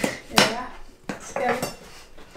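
Kitchen knife slicing melon on a cutting board, with a few sharp knocks of the blade against the board.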